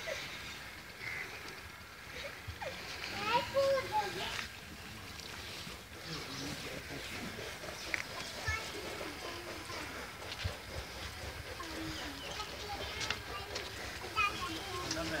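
Faint voices talking in the background, loudest about three to four seconds in, over a low steady rustle, with a few soft knocks later on.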